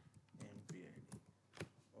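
Faint keystrokes on a computer keyboard: a handful of scattered taps as text is typed.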